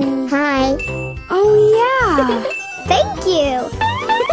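Cartoon baby voices with big swooping rises and falls in pitch over children's background music, with a short high chime heard twice.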